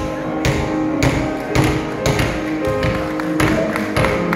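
Hand hammers striking a slab of solid chocolate wrapped in gold foil, sharp knocks roughly every half second, about seven in all. Music with held notes plays underneath.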